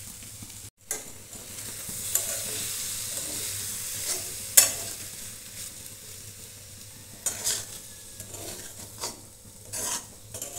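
A metal spatula stirs sago pearls into potato and tomato masala sizzling in a metal kadai, scraping against the pan in separate strokes, loudest about halfway through. The sound drops out for a moment near the start.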